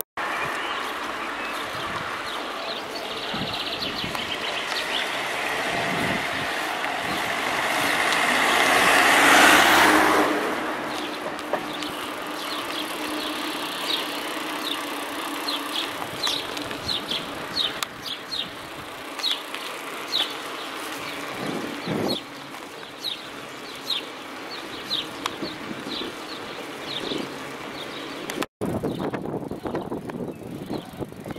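Wind and road noise from a bicycle-mounted camera on the move. A motor vehicle passes, swelling to its loudest about nine to ten seconds in and then fading. After that the steady riding noise goes on, with many short high chirps.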